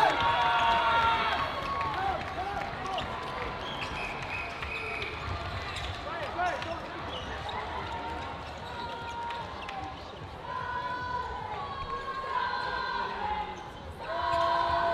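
Sports-hall ambience: cheering fades over the first couple of seconds, then players' voices call and shout across the reverberant hall, with balls bouncing on the wooden floor.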